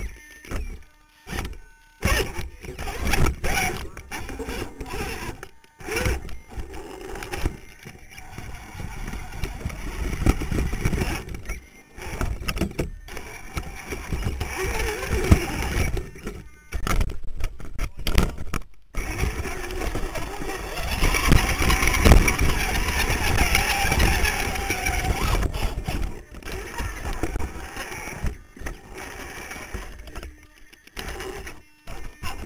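Twin 35-turn handwound brushed electric motors of an RC rock crawler whining through the drivetrain in stop-start bursts as it climbs, heard close up from a camera on the chassis, with knocks and scrapes of the chassis and tyres on rock. The bursts are longest and loudest about two-thirds of the way through.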